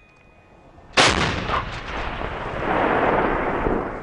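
A towed artillery field gun firing a single round about a second in: a sudden loud blast followed by a long rolling rumble that swells again and lingers before fading.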